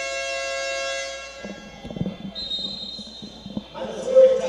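An arena horn sounds a steady, buzzing tone for about two seconds. A few knocks follow, then a referee's whistle is blown in one steady blast of over a second near the end.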